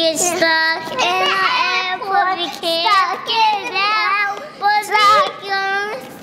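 A child singing a made-up song, a run of sung phrases with long held notes.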